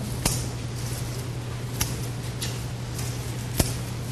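Scissors snipping ivy stems: a few sharp snips spread out, the loudest about three and a half seconds in, over a steady low hum.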